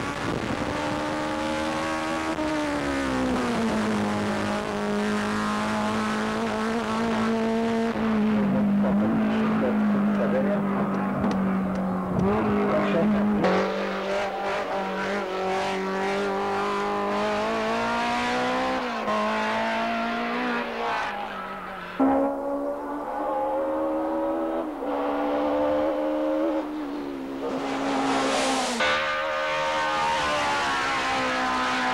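BMW M3 race car's four-cylinder engine running hard at high revs. Its note holds near one pitch for long stretches, falls and rises as the revs change, and jumps abruptly about two-thirds of the way through.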